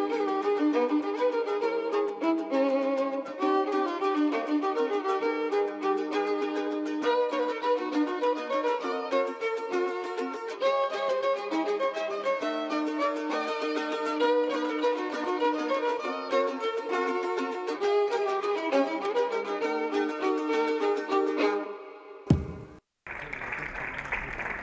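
Violin music, with bowed notes and some plucked passages, that stops about two seconds before the end. After a brief break, audience applause begins.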